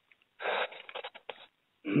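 A short breathy puff about half a second in, heard over a telephone line, followed near the end by a voice beginning a hesitant 'mm'.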